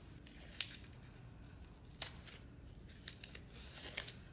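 Blue masking tape being peeled off a painted wooden block, coming away in a few short tearing crackles, the sharpest about two seconds in and a quick run of them near the end.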